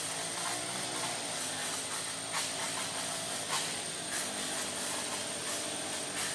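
Steady outdoor forest ambience: a continuous hiss with a thin, high, unbroken tone over it, and a couple of faint clicks in the middle.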